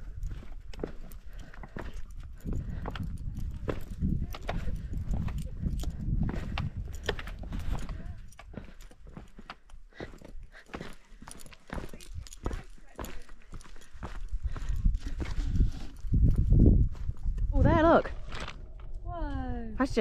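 Footsteps clacking and scuffing on loose rocks and boulders, with wind rumbling on the microphone. Near the end the rumble swells, followed by a wavering pitched sound that slides down.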